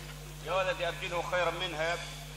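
Several men calling out in short acclaiming cries during a pause in a Quran recitation, starting about half a second in, over a steady low hum.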